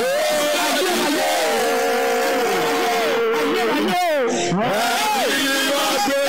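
A man's voice through a microphone and PA, chanting in prayer with bending pitch and a long held note in the middle, over music.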